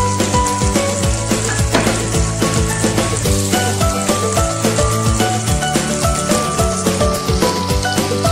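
Background music with a steady beat, held melody notes and a sustained bass line.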